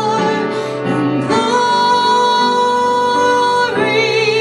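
A woman singing a solo song while accompanying herself on a grand piano. After a short dip about a second in, she holds one long note until near the end of it.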